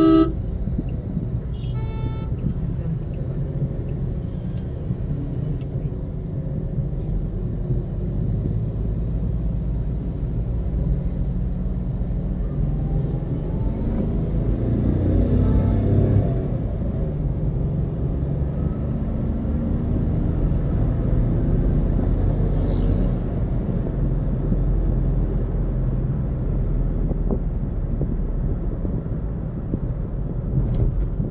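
Steady road and engine rumble inside a car driving at speed on a highway. A horn honks right at the start and a second, shorter and higher-pitched horn toot sounds about two seconds in.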